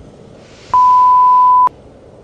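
A single loud, pure beep tone held steady for about a second, starting and stopping abruptly: an edited-in censor bleep.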